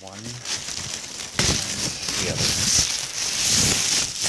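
Clear plastic wrapping around a new flatscreen TV being crinkled and pulled open, loudest from about a second and a half in.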